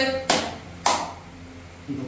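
Two sharp taps about half a second apart in the first second, each with a short echo in a small stone room.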